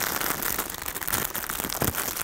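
Clear plastic bag crinkling as the yarn cakes inside it are handled, an irregular run of crackles.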